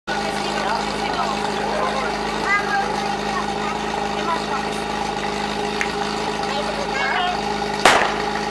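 Portable fire pump engine idling steadily on its platform. A single sharp shot near the end, the starting signal for the fire-attack run.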